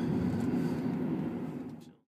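Car on the move, heard from inside the cabin: a steady low hum of engine and road noise, which fades out to silence near the end.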